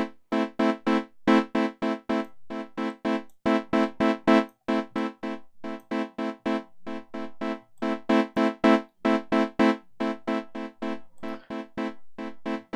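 Bitwig Polysynth chord retriggered by the Note Repeats device in Euclid mode: short chord stabs, about four a second, in a pattern with gaps, some stabs louder than others. The louder stabs are the accents, and their number is being raised.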